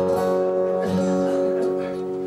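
Acoustic guitar strumming a chord that rings on, struck again about a second in.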